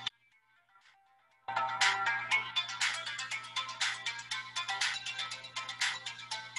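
Music begins about a second and a half in, after a brief near-quiet: a fast run of bright, ringing notes over a steady low tone.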